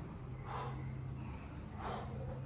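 A man breathing hard while exerting himself at push-ups: two short, sharp breaths, one about half a second in and one near the end.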